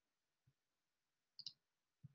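Near-silent room tone broken by a few faint clicks: a soft low tap about half a second in, then a sharper double click about a second and a half in.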